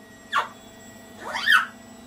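African grey parrot whistling: a short falling whistle about a third of a second in, then a longer whistle that glides up and falls back down about a second and a half in.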